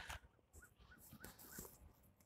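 Near silence between spoken passages, with a few faint, short high-pitched chirps.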